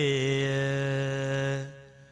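A man's chanting voice holding the final syllable of a chanted Sinhala verse line on one steady note, fading out about one and a half seconds in.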